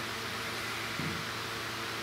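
Steady hiss of room tone with a faint low hum, and a brief faint sound about a second in.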